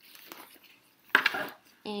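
Fabric sports backpack rustling as it is handled, then set down with a short clatter about a second in.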